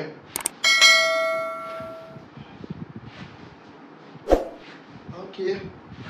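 Two quick mouse clicks, then a bell-like ding that rings out and fades over about a second and a half: the sound effect of an on-screen YouTube subscribe-button animation. A single thump comes about four seconds in.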